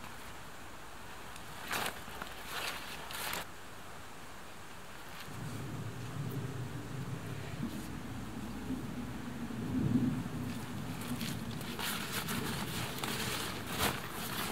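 Rustling and handling noises from a poncho shelter and its stick frame being worked on: a few short rustles early, then more near the end. From about five seconds in, a steady low rumble runs underneath.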